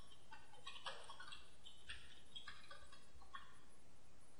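Faint, irregular computer keyboard typing, several keystrokes a second, each with a short ringing tone to it.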